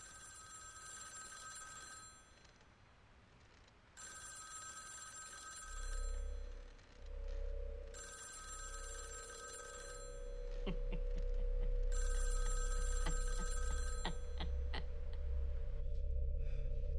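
Old-style telephone bell ringing four times, each ring about two seconds long with two-second pauses. A low steady drone comes in about halfway through and grows louder, with a few sharp clicks near the end.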